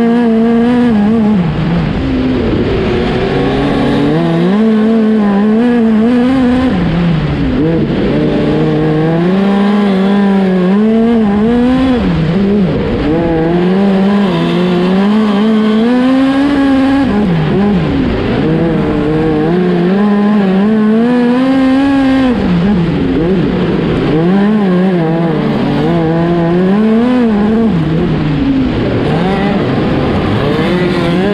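Onboard sound of a small open-wheel dirt-track race car's engine at racing speed. The engine note climbs on each straight and drops back into each turn, in a repeating lap rhythm, with the engines of nearby cars underneath.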